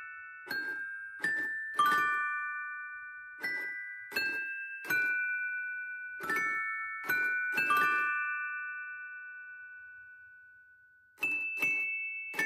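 Mr. Christmas Santa's Musical Toy Chest (1994): its animated figures strike the metal chime bars with mallets, playing a slow Christmas tune note by note. The last note of the phrase rings out for about three seconds, and the next notes start near the end.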